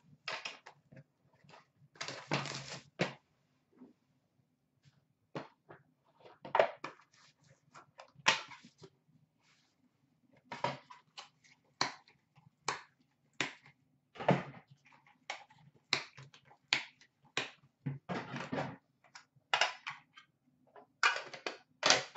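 A cardboard hockey-card box being opened and hard plastic card cases handled. Scattered clicks, taps and short scrapes, with a few longer scrapes, one about two seconds in.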